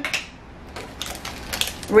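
Plastic lid of a canister of plain bread crumbs being worked open by hand: a quick run of small clicks.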